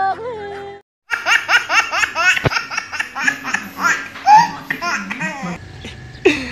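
A person laughing hard in quick repeated bursts. It starts about a second in, after a brief silence, and fades near the end.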